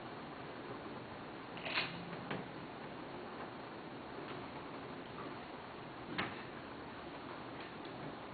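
Quiet room tone with a steady hiss, broken by a few faint clicks and knocks, about two seconds in and again near six seconds.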